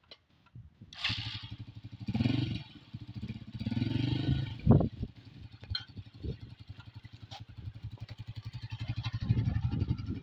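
Small motorcycle engine going quiet briefly, then starting again about a second in and running with a steady pulse, revved up in short surges several times in between idling. A short sharp knock comes near the middle.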